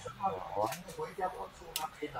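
Indistinct talking, with two sharp clicks about a second apart.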